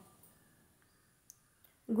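Near silence: a pause between two spoken words, broken by one faint, short click about two thirds of the way through. A voice cuts off at the start and begins again just at the end.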